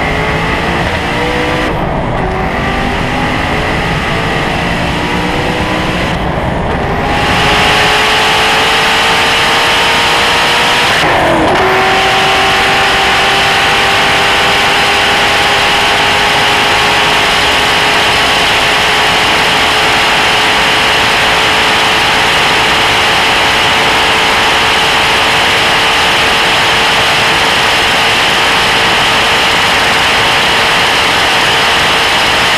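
Hennessey Venom GT's twin-turbo V8 at full throttle, heard from inside the cabin, its pitch climbing through the gears with three quick upshifts in the first twelve seconds. It then pulls in top gear with a slowly rising note under a heavy rushing noise as the car nears 270 mph.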